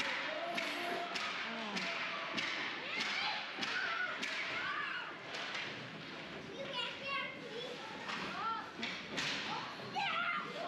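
Youth ice hockey play in an indoor rink: repeated sharp clacks and thuds of sticks, puck and boards, with children's voices shouting and calling.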